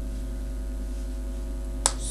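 Steady electrical mains hum, with one sharp click near the end.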